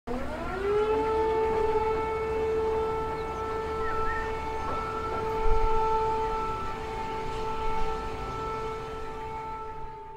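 A civil-defence-style warning siren winds up in pitch over about the first second, then holds one steady wailing tone, starting to fade out near the end.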